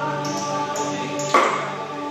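Live band playing slow, droning instrumental rock: electric guitar notes held steady over a pulsing low line, with one loud drum hit a little past halfway that rings out.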